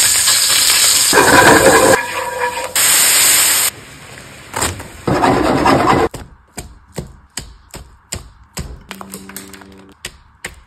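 Ground-beef patty sizzling loudly in a hot stainless pan, with a second loud sizzle just before six seconds in. After that comes a run of about ten sharp clicks and taps.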